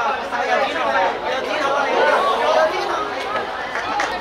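Many voices talking and calling out at once, overlapping into steady chatter from spectators around the pitch.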